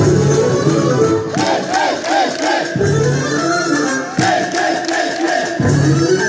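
Bulgarian folk dance music with a group of dancers shouting short, rhythmic cries in chorus, in two runs of whoops.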